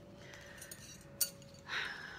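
Quiet room with a single light click about a second in, as small objects are handled at a table.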